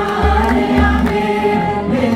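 A man singing a religious hymn into a microphone through a PA, in long held notes, with a deep beat underneath.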